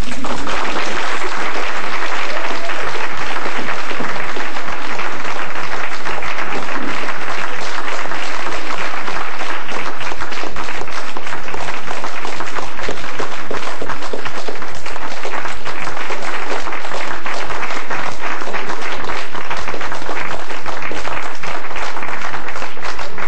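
Audience applauding steadily, breaking out as the cello and guitar music ends.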